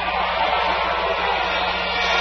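Crowd applauding, a steady even noise.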